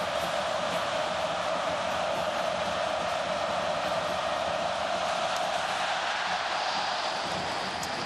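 Large stadium crowd cheering in a steady roar as the opening kickoff is made, easing slightly near the end.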